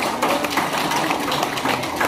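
Brief applause from a seated congregation, a dense even patter of many hands.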